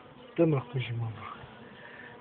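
Honeybees buzzing around an open hive during an inspection, a faint steady hum.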